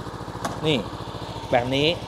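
Honda CB500X's parallel-twin engine idling steadily, a low even pulsing. A single sharp click sounds about half a second in.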